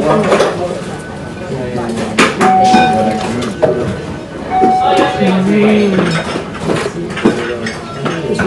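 Bowls, dishes and cutlery clinking in a busy ramen restaurant, with voices in the background and two short beeps.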